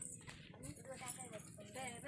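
Faint speech: a voice talking quietly.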